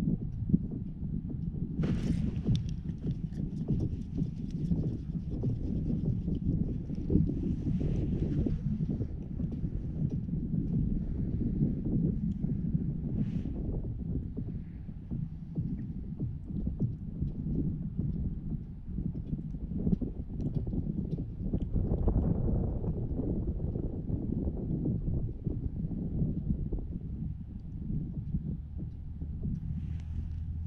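Wind buffeting an outdoor camera microphone: a low, uneven rumble, with a sharp click about two seconds in.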